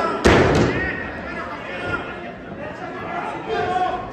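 Wrestlers' bodies slamming onto the wrestling ring's canvas with a loud slam a quarter second in and a second hit right after, followed by spectators shouting.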